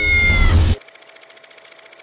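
A cat's single meow, lasting under a second and falling slightly in pitch. It is followed by a faint steady tone with fast, even ticking.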